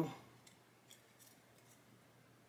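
Faint light clicks of small plastic model parts being handled and pushed together by hand, a few scattered ticks over a near-silent background.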